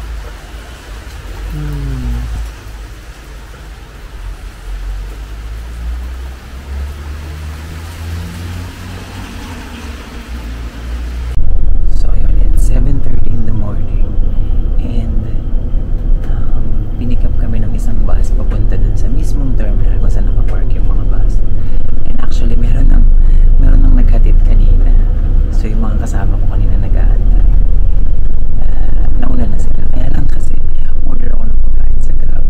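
Steady rain on a wet street with passing traffic. About eleven seconds in, a sudden cut to a much louder moving coach cabin: a deep, steady engine and road rumble with a man's voice over it.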